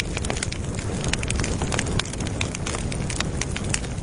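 Crackling fire sound effect: a dense, irregular run of sharp pops and snaps over a steady low rushing noise.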